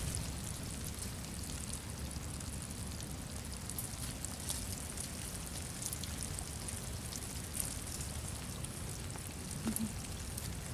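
Faint outdoor ambience: a low steady rumble with scattered light ticks and rustles.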